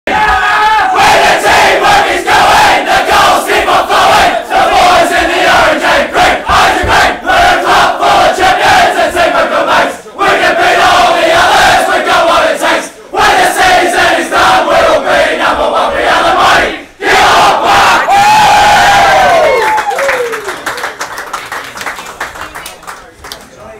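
A packed room of footballers and supporters singing the club song together at full voice, shout-singing in unison with short breaks about 10, 13 and 17 seconds in. It ends with a long held shout that falls away in pitch near the end.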